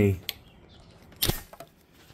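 End of a spoken word, then quiet with one sharp click a little over a second in as the metal discharge tool is handled under the CRT's anode cap. There is no high-voltage spark snap: the tube has already bled off its charge through its built-in resistor.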